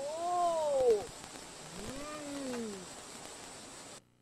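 A voice giving two long cries, each rising and then falling in pitch over about a second, the first louder than the second.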